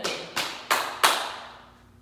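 Hand-jive slaps: hands patting the thighs and striking together, four sharp slaps about a third of a second apart, each with a short echo.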